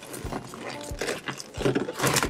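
Inflated latex balloons being handled: rubbing and squeaking against each other, with irregular soft knocks, as a balloon nozzle is wrapped and tied.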